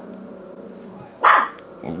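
A dog off-camera gives a low drawn-out whine, then one short, loud bark a little over a second in.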